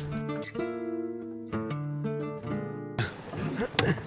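Short stretch of acoustic guitar music, plucked and strummed, that cuts off about three seconds in, giving way to outdoor background noise.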